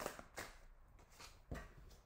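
Faint handling of tarot cards: three brief soft strokes as cards are drawn from the deck and laid down on a cloth-covered table.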